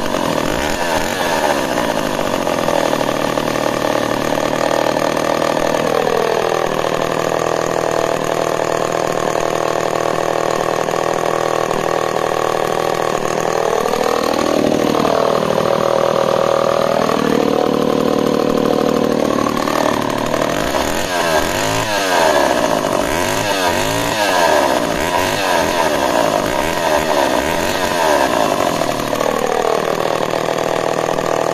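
Homelite Super XL two-stroke chainsaw running after standing unused for weeks. It drops to idle, is revved once about halfway through, then blipped several times in quick succession, and settles back to a steady idle near the end.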